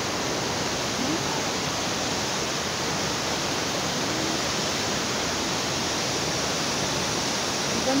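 Waterfall: the steady, unbroken rush of falling water, even in level throughout.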